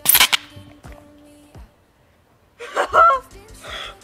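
A short, loud hiss of helium escaping from a disposable helium tank's valve as the inflator is fitted, lasting about half a second. About two and a half seconds later comes a startled high-pitched shriek, then laughter.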